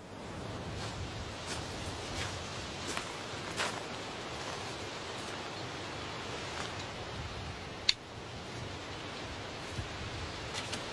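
Outdoor garden ambience: a steady hiss with a few faint rustles and soft crunches in the first few seconds, and one sharp click about eight seconds in.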